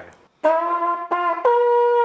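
An old military signal bugle (dienstklaroen) being blown: a lower note sounded twice, then a higher note held steadily.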